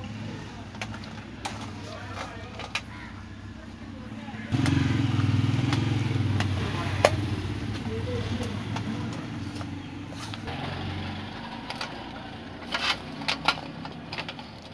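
Small clicks and taps as metal clamps are worked off a fan heater's element housing. A motor vehicle's engine rumble starts suddenly about four seconds in and fades away over several seconds.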